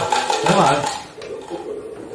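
Tableware clinking during a meal: bowls, plates and spoons knocking in a few short sharp clicks, with a voice over the first second.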